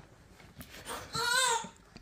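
A baby's short, high-pitched whimpering cry about a second in, rising and then falling in pitch.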